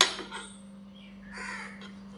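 Kitchen knife chopping through a raw potato onto a plastic cutting board: one sharp chop right at the start, then a short rasping sound about a second and a half in, over a steady low hum.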